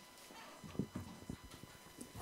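A few faint, low thumps and knocks from a handheld microphone being picked up and handled before it is spoken into.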